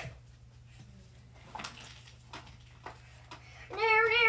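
Faint scattered knocks and bumps of a child moving about a small room, over a low steady hum. Near the end a child starts singing a long, wavering note.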